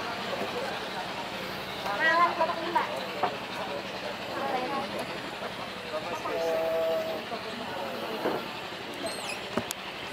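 Indistinct voices of people talking in the background, in short spells, over steady ambient noise.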